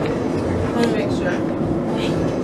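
Indistinct voices of several people over a steady low rumble of room noise in a busy eatery.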